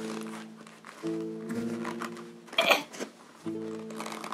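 Background music: soft sustained chords that swell in phrases about every two and a half seconds. About two and a half seconds in there is a brief rustle as a leather boot is pulled on.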